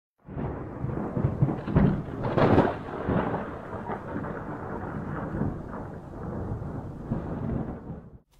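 Thunder rumbling over a steady wash of rain, loudest in the first three seconds, then settling and fading out near the end.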